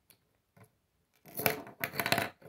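Plastic Lego bricks and a Lego chain clattering against a wooden tabletop as a small Lego sculpture breaks apart. Mostly quiet for the first second, then a quick cluster of sharp clicks and rattles.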